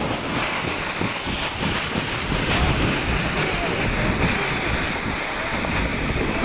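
Wind buffeting the microphone: a loud, steady rush with a low rumble.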